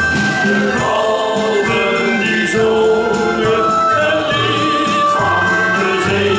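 A male shanty choir singing a sea shanty together, holding sustained sung notes.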